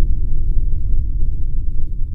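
A deep, loud rumbling sound effect for an animated number reveal, steady and held in the bass.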